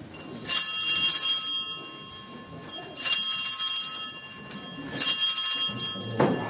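Altar bells (sanctus bells) struck three times, each a bright, many-toned ring that fades slowly, signalling the elevation of the consecrated host.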